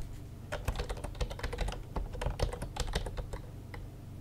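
Computer keyboard typing: a run of quick, irregular key clicks starting about half a second in.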